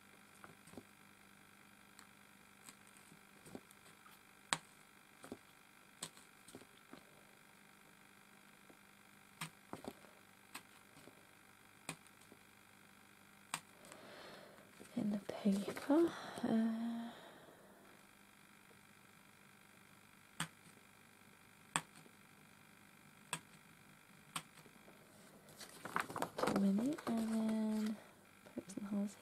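Faint, irregular clicks and taps of a pointed tool poking holes through a furry fabric block, spaced a second or more apart. A person murmurs briefly about halfway through and again near the end.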